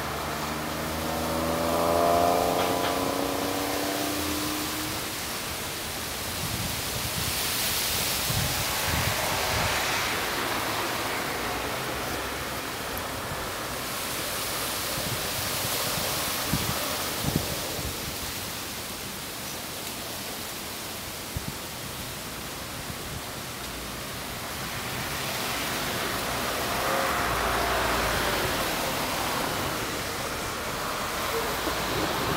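Traffic noise from passing vehicles, a steady rush that swells and fades as each one goes by, with a rising whine in the first few seconds and a few faint clicks in the second half.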